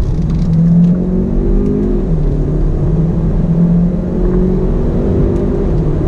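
Turbocharged 1.6-litre inline-four of a Hyundai Elantra GT N Line accelerating hard, heard from inside the cabin over road and tyre noise. The engine note climbs, drops with a dual-clutch upshift about two seconds in, climbs again and shifts once more near four seconds. The exhaust note is subdued, with little sound coming from the exhaust.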